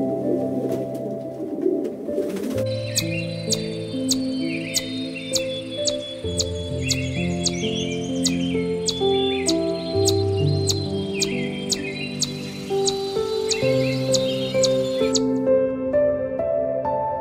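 Soft, slow background music with bird calls laid over it: a low dove-like coo in the first two seconds, then rapid, evenly repeated high chirps, about three a second, with twittering beneath, until they stop shortly before the end.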